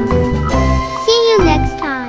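Cheerful children's background music with bell-like jingle notes over a steady bass line.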